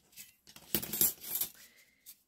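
Thin stainless steel cutting dies clinking against each other as they are gathered into a stack by hand: a few light metallic clicks, most of them around the middle.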